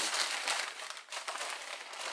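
Crinkling and rustling of the wrapping on a package of frozen pork ribs as it is handled and lifted out of a chest freezer, with many small irregular crackles.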